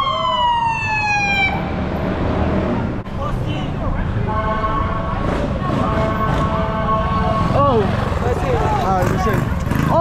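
Police siren over steady traffic and wind rumble: it winds down in a falling tone in the first second and a half, a steady held note sounds for about three seconds in the middle, and short rising-and-falling whoops repeat near the end.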